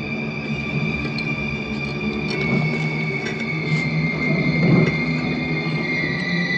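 Eerie horror film score: several high tones held long, one slowly sinking in pitch, over a rumbling low drone that swells near the end.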